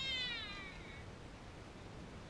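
A single high-pitched shout from a girl's or young voice, starting loud and falling in pitch over about half a second, over steady outdoor background noise.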